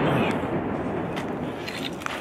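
The rumble of a shell explosion going on after the blast and slowly dying away, with a few sharp knocks in the second half.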